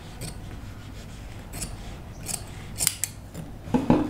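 Fabric shears snipping through draping fabric on a dress form, a few separate cuts at uneven intervals, followed by a louder thump near the end.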